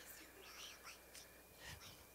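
Near silence: room tone with faint whispering.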